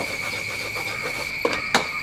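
Curry paste sizzling as it fries in oil in a steel wok, with a wooden spatula knocking against the wok two or three times in the second half. A steady high-pitched insect trill runs underneath.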